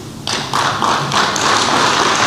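Audience applause that breaks out about a quarter of a second in, a dense patter of many hands clapping together.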